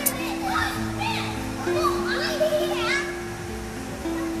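Children's high-pitched shouts and squeals over music with long held notes.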